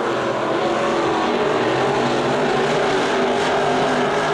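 Engines of IMCA Modified dirt-track race cars running together as a pack during the race, a steady, gently wavering drone heard from across the track.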